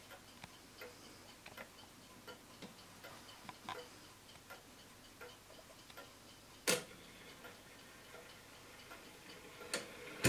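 Winterhalder & Hofmeier drop-dial regulator wall clock's deadbeat escapement ticking steadily and faintly, with one louder click about two-thirds of the way through and another just before the end.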